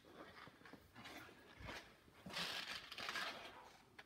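Faint rustling and handling noise, a little louder in the second half, with a small click at the very end.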